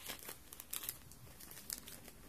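Clear plastic bag of paper die-cut toppers crinkling faintly as it is handled, in a few short crackles: one at the start, a cluster just under a second in, and another near the end.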